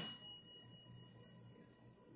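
A single bell-like ding, several high, clear tones together, that rings out and fades away over about a second and a half.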